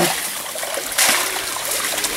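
Shallow ditch water splashing and trickling as a long-handled scoop net is dipped and dragged through it, with a sharper splash about a second in.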